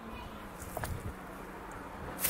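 Quiet outdoor background with a faint steady low hum and a soft, brief tap a little under a second in.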